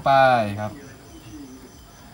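A man speaks briefly for the first half-second or so, then faint, steady, high-pitched insect chirring carries on in the background.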